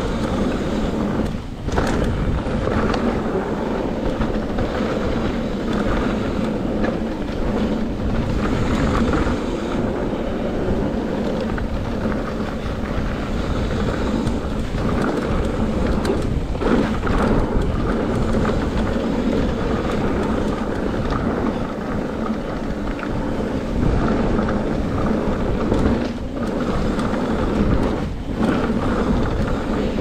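Mountain bike rolling fast down a loose gravel trail: steady tyre noise on stone and the bike rattling, with wind rumbling on the microphone.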